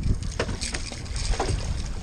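Wind buffeting the microphone over a low rumble, with a few brief splashes as a hooked striped bass thrashes at the surface beside the boat.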